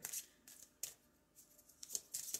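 A deck of oracle cards being shuffled by hand: three soft, short swishes of cards sliding against each other, about a second apart.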